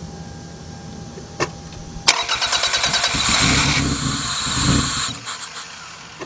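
A click, then a car's starter cranking the engine: a fast, even churning that starts suddenly about two seconds in and runs for about three seconds before stopping.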